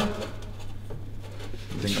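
Quiet workshop room tone with a steady low hum and no distinct knocks or clicks. A man's voice starts again near the end.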